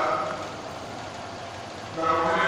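A man's voice through a microphone trails off, then a pause of about a second and a half filled with steady background noise of a large hall, before speaking resumes at the very end.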